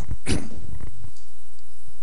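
A man's short, breathy laugh close to a handheld microphone in the first second, then only faint hiss and low hum.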